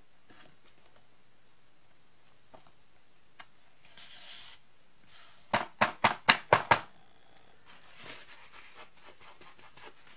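About seven quick taps in a little over a second, a rubber stamp and ink pad tapped together to ink the stamp. Softer rubbing and sliding of cardstock on the desk come before and after the taps.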